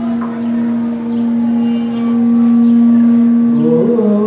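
A steady, sustained drone note with overtones, joined about halfway by a higher held tone. Near the end a voice glides upward into a sung note.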